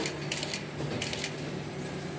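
Notebook gathering machine with an automatic index feeder running: a steady low hum under a rhythmic swish of sheets being fed and pushed along, about two strokes a second.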